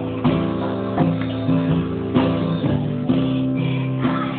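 Guitar strumming chords in a steady rhythm, a fresh strum about every half second, with no voice over it.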